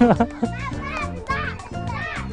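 Several children calling and shouting in high voices, over background music.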